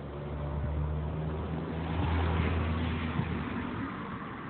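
A motor vehicle's engine passing by, its steady drone growing louder to a peak about two seconds in and then fading away.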